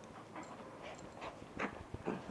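Small dog play-biting and mouthing a person's hand, making a few short, quiet sounds spaced through the two seconds.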